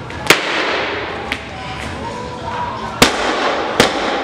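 A loaded barbell with bumper plates is jerked overhead with a sharp bang near the start, then dropped onto the lifting platform about three seconds in: a loud crash followed by bounces coming closer and closer together. Music plays underneath.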